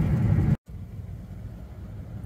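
Road noise inside a moving car's cabin: a steady low rumble of tyres and engine. It cuts out abruptly about half a second in at an edit and resumes quieter.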